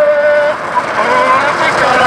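Long drawn-out whoops from a voice, held on one wavering pitch. They break off about half a second in and start again near the end, over the rolling noise of a soapbox cart's wheels on asphalt.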